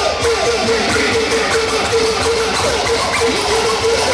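DJ scratching a record on turntables over a beat: a held tone chopped into quick, even stabs by the crossfader, with short pitch glides from the record being worked back and forth.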